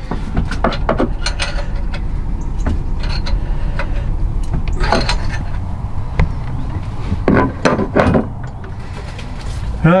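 Metal clinks and knocks of a spanner working a replacement oil pressure sender into a narrowboat's diesel engine block, threaded in carefully to avoid cross-threading. A steady low hum runs underneath.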